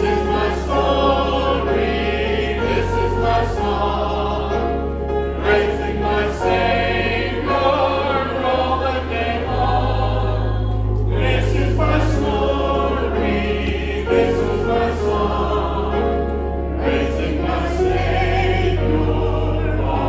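A congregation singing a hymn together over an instrumental accompaniment, with sustained bass notes that change every second or two.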